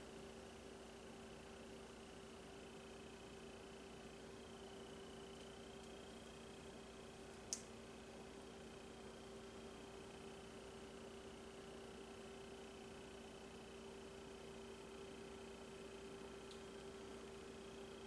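Near silence: room tone with a faint steady hum and a single small click about seven and a half seconds in.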